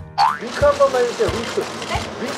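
A short rising cartoon swoop sound effect right at the start, followed by a reporter's voice asking for a wink over background music with a steady beat of about two thumps a second.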